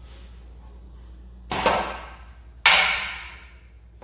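Two handling noises as a yellow plastic angle guide is picked up and set down on wooden molding: a short scrape-like noise about a second and a half in, then a sharper, louder knock a little over a second later that fades out.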